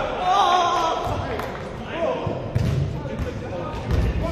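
Men's indistinct calls and shouts echoing in a large indoor sports hall, with a couple of dull thuds of a football being kicked near the end.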